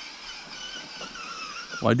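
Electric motor and gears of a 1/10-scale RC rock crawler whining steadily as it crawls through a shallow creek, the pitch wavering slightly with throttle. A voice starts near the end.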